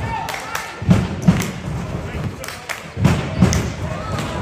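Two pairs of heavy, dull thuds, the blows in each pair about half a second apart and the pairs about two seconds apart, over a steady murmur of voices in a large gym.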